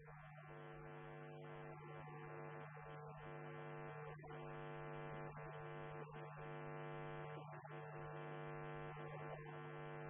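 Steady electrical hum or buzz with many even overtones, faint and unchanging, with no speech heard over it.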